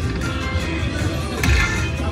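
Dragon Link slot machine's hold-and-spin bonus music and reel-spin effects playing steadily, with a heavier hit about one and a half seconds in.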